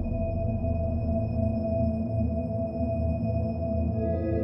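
Ambient background music: held, steady synth-like chord tones with no beat.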